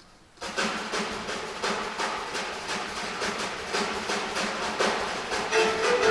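Jazz drum kit starting a steady groove about half a second in, with cymbal and drum strokes in an even rhythm; other pitched instruments join near the end.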